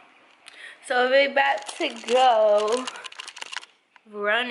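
A woman's voice, unclear words or vocalising, then a quick run of small clicks and rustles near the end.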